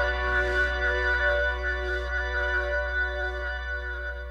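Live rock band's closing chord ringing out: held electric guitar and keyboard notes over a low drone, without drums, slowly fading.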